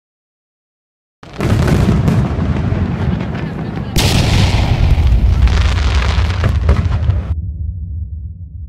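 Fireworks display: a dense barrage of bursts and crackling that starts about a second in. It grows sharper and louder about four seconds in and cuts off abruptly near the end.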